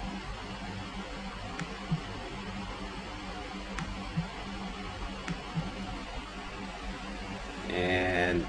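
Quiet room tone: a steady low electrical hum and hiss from the microphone, with a few faint clicks scattered through. A man's voice begins right at the end.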